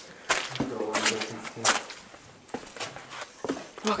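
Footsteps crunching through snow and over scattered boards, about one step a second.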